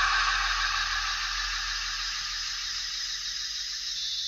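Live electronics in an improvised piece: a hissing, static-like wash of sound that slowly fades, with a thin, very high steady tone coming in just after the start.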